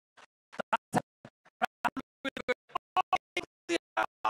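Broken-up, glitching stream audio: very short clipped fragments of a voice, several a second, each cut off abruptly into dead silence, so no word comes through whole. The picture is frozen at the same time, the sign of a live stream dropping out.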